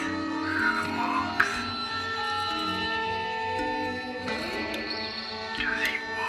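Experimental drone music of sustained, layered guitar and violin tones, with swirling noisy textures near the start and end and a short sharp click about one and a half seconds in.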